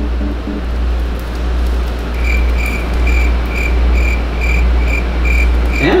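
Cricket chirping, added as the comic 'crickets' cue for an awkward silence: a run of evenly spaced short chirps, about two a second, starting about two seconds in, over a steady low rumble and hiss.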